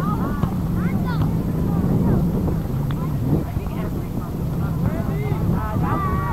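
Distant players and spectators shouting and calling across a soccer field, short unintelligible calls throughout, over a steady low hum and some wind on the microphone.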